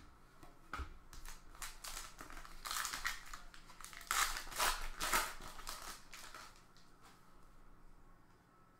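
A foil trading-card pack wrapper crinkling and tearing open by hand: a run of quick, crackly rustles that dies away near the end.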